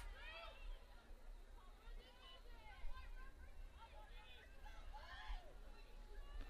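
Faint, distant voices of players and spectators calling and shouting across the field hockey pitch, over a low rumble of open-air field noise.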